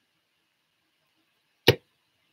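A single sharp tap on the desk about one and a half seconds in, typical of a deck of cards being knocked or set down; otherwise very quiet.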